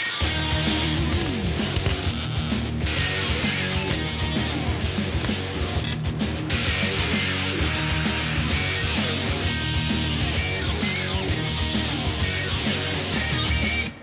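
Handheld angle grinder cutting and grinding steel exhaust tubing in several stretches, the whirring disc biting into the metal, with background music mixed in.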